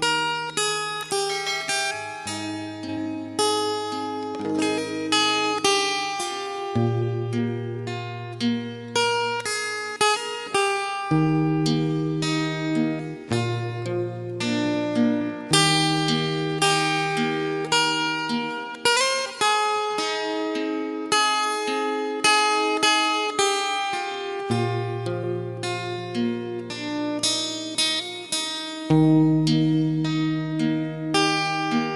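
Acoustic guitar playing a solo intro: plucked notes over chords that change every two to four seconds.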